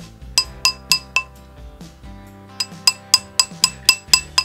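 A mallet taps a bent gold ring on a steel ring mandrel to round it out, and the mandrel rings with each sharp metallic strike. There are four taps in the first second or so, then a pause, then a quicker run of about seven taps near the end.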